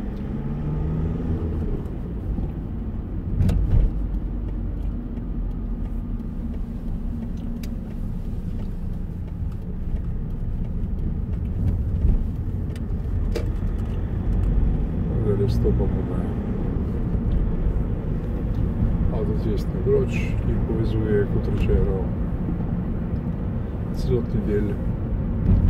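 Steady road and engine noise inside a moving car's cabin, a continuous low rumble.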